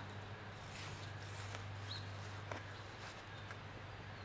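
Faint, quiet sound of an aluminum trowel working dry garden soil, a few soft scrapes and crunches over a steady low hum. A single short high chirp comes a little before the middle.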